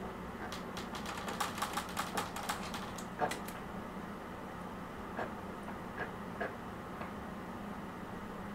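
Someone drinking in long swigs from a plastic gallon water jug: a quick run of small clicks and crackles over the first three seconds, then a few single ones spaced out.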